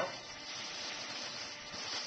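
Foam case being slid out of a fabric carry bag: a steady rustling scrape of foam rubbing against the bag's fabric.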